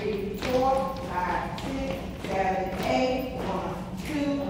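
A voice holding sung-sounding notes, with dancers' shoes tapping and shuffling on a hard floor.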